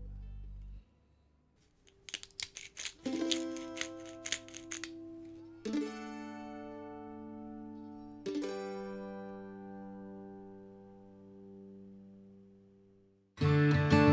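Background music. A held note fades out, and after a brief pause comes a run of plucked notes, then two long chords that slowly die away. Near the end, louder strummed acoustic-guitar music begins.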